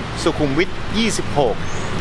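A man speaking Thai, over a steady low background hum.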